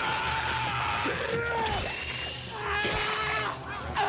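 Soundtrack of a TV battle scene: music with voices crying out and shouting, in long wavering calls.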